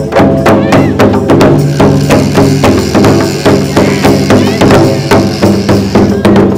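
Folk music led by a dhol, a two-headed barrel drum, beating a fast, steady rhythm under held pitched notes.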